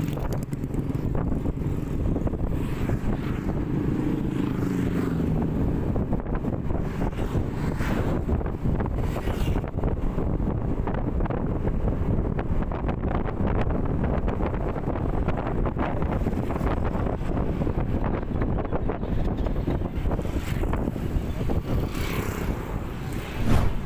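Wind rushing over the microphone with the steady running of a Yamaha NMAX single-cylinder scooter engine underneath, while riding at about 30 to 40 km/h.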